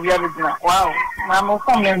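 A person's voice talking continuously in quick phrases, the pitch wavering up and down.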